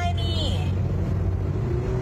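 Road and engine noise heard inside a moving car's cabin: a steady low rumble.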